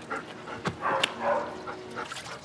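A dog making a few short, soft vocal sounds, with a sharp click about a second in.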